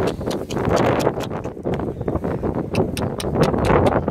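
Two ponies jostling each other close by on grass: irregular knocks and scuffles over a rough rushing noise.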